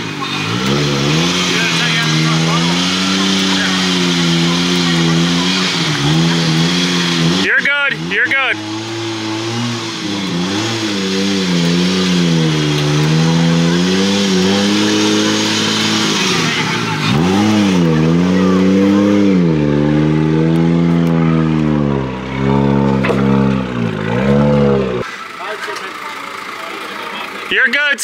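Car engine running at low revs under throttle as the car is driven up loading ramps onto a transporter, its pitch wavering up and down with repeated short blips, quieter near the end.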